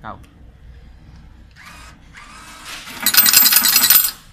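Coin changer at work: the bill acceptor's motor briefly whirs as it draws in a banknote, then, in the last second, a loud rapid clatter of coins being dispensed into the metal tray.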